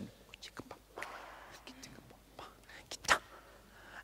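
A soft, whispered voice and breathing, with a few light clicks and one sharper click about three seconds in.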